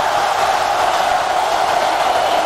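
A large crowd cheering, a steady dense noise of many voices with no single voice standing out.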